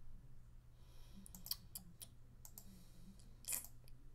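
Faint computer mouse clicks, about half a dozen scattered sharp clicks with the loudest near the end, over a low steady hum.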